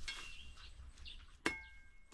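A single sharp metallic clink with a brief ringing tone about one and a half seconds in, like a metal hand tool striking, over faint bird chirps.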